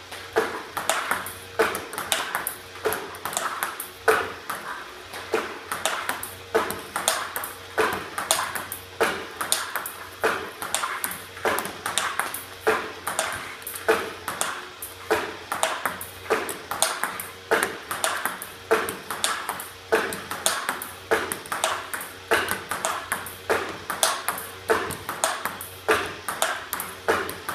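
Table tennis balls clicking in a steady, quick rhythm: fed by a ball robot, bouncing on the table and struck with brushed forehand topspin strokes, over and over. A faint low hum runs underneath.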